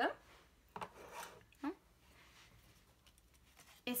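Paper or cardstock being handled on a craft mat: a short rustle about a second in, then quiet room tone.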